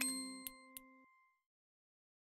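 Closing sound of an animated logo sting: a bright ding whose ringing tones fade, with two small ticks, and the sound cuts off about a second in.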